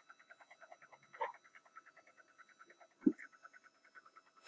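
HP Scanjet G4010 flatbed scanner preparing to scan: a faint, rapid, even pulsing of about nine beats a second from its mechanism, with a short low thump about three seconds in.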